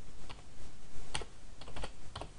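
Computer keyboard keystrokes: a handful of separate, unevenly spaced key taps as a word is typed, most of them in the second half.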